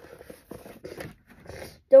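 Faint, scattered rustling and scraping of a vinyl record's paper inner sleeve and cardboard album jacket as the LP is handled. It is paper noise, not the record snapping.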